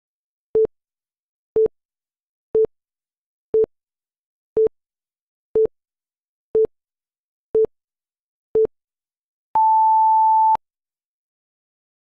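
Countdown timer beeps: nine short, identical beeps about once a second, then one longer, higher beep lasting about a second that marks the end of the count.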